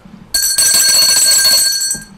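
A bell ringing loud and continuous for about a second and a half, a high metallic ring that starts a moment in and cuts off abruptly.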